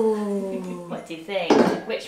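A voice holds a long, gliding note for about a second; then, about one and a half seconds in, a metal cake tin is set down on a wooden table with a short clatter.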